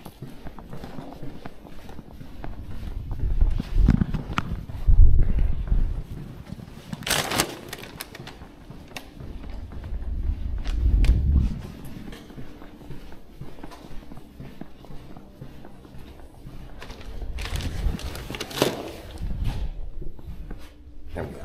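Footsteps on carpet and the rustle of clothing and a paper takeout bag against a body-worn camera while walking: irregular dull low thumps, with two brief crinkles, one about a third of the way in and one near the end.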